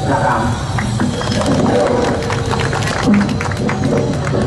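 Music with a run of sharp, quick percussive hits and a held note, after a brief bit of voice at the start.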